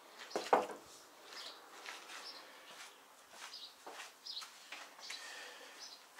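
Scattered short, high chirps of small birds, with a few brief soft knocks and rustles between them.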